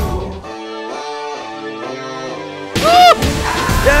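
Recorded song playing: a soft keyboard part of held chords that step from one to the next, then about three seconds in a loud pitched hit whose tone swoops up and back down, coming again just before the end as the full beat enters.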